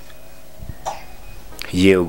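A person coughs once, briefly, about a second in, over a faint steady room hum; a man's voice starts speaking near the end.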